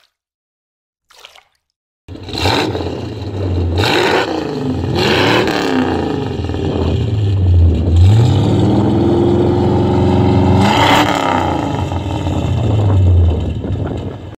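1973 Cadillac Eldorado's 8.2-litre (500 cu in) V8 running through its twin exhaust pipes, revved repeatedly: about six throttle blips, the engine note rising and falling with each. The sound begins abruptly about two seconds in.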